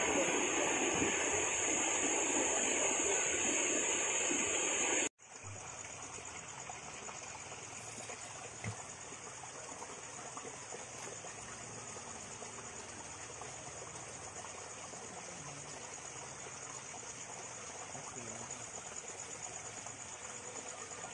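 Floodwater rushing across a village road in a loud, steady rush. About five seconds in, the sound cuts off abruptly and gives way to a much quieter, steady wash of shallow floodwater, with a thin high-pitched drone running above it.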